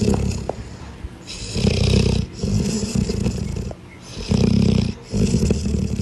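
A dog making a cat-like purr while being petted: a low rattling rumble with each breath, in bursts of about a second, about five times with short breaks.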